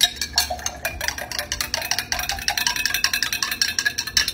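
A metal straw stirring a drink in a glass mason jar, clinking rapidly against the glass, many clinks a second, each with a brief ring.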